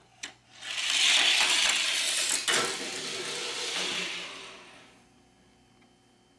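Tomica die-cast toy car rolling down a plastic track: a small click, then a rolling noise that builds within a second, carries a sharp click about halfway through and fades away over the last couple of seconds.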